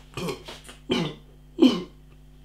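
A man clearing his throat with three short coughs into his fist, about two-thirds of a second apart.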